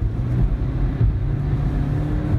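In-cabin road noise of a 2019 Toyota Prius AWD travelling at highway speed: a steady low rumble of tyres and drivetrain with a faint hum.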